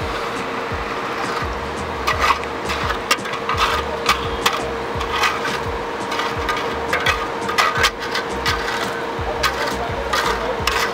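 Irregular knocks and scraping of wet concrete being worked into timber wall formwork, starting about two seconds in, over background music with a steady beat.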